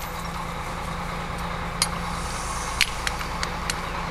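The crane's engine running steadily at idle, with a few faint clicks.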